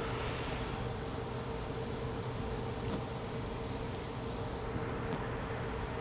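Steady low background hum with a faint steady tone that fades out near the end; no distinct clicks or bursts of gas are heard.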